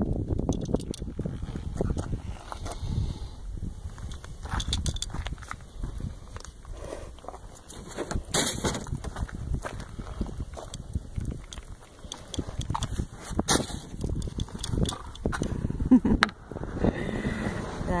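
Outdoor wind buffeting the microphone as an uneven low rumble, with scattered clicks and knocks from the camera being handled, the sharpest about halfway through and again a few seconds later.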